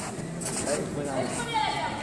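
Indistinct voices echoing in a large hall, quieter than the nearby coaching on either side.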